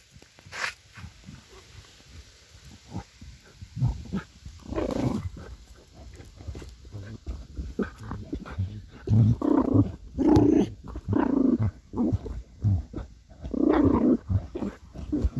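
German hunting terrier (Jagdterrier) growling in repeated short bursts inside a fox earth, heard through the burrow opening, more often in the second half.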